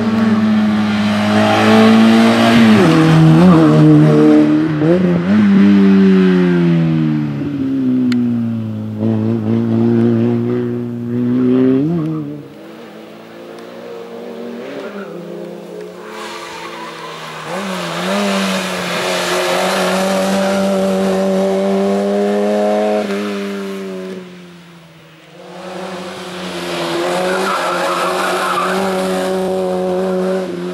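Peugeot hatchback race car's engine revving hard, its pitch climbing and dropping sharply again and again as the driver lifts, brakes and shifts through a cone slalom. It fades twice as the car moves away and holds high, steady revs between.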